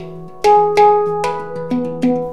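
Handpan played by hand: four notes struck about half a second apart, each ringing on and overlapping the next, over a steady low tone.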